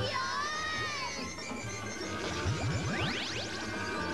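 Cartoon magic-spell sound effects over background music: a shimmering chime-like sweep at the start, then a quick rising zip about two and a half seconds in.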